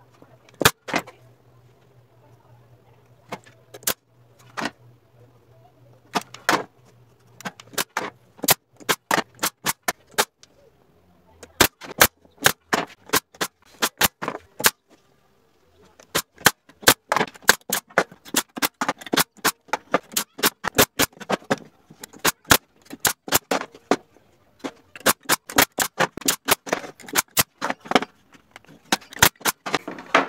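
Pneumatic nail gun firing, dozens of sharp shots in quick runs as the sides of a small wooden box are nailed together, with a short pause about halfway and denser firing in the second half.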